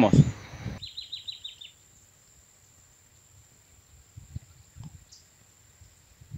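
A quick run of about eight short, falling, high chirps from a bird. It is followed by near silence with a faint steady high-pitched tone.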